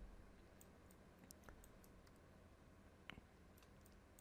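Near silence with a few faint clicks of computer keys and mouse buttons, the loudest about three seconds in.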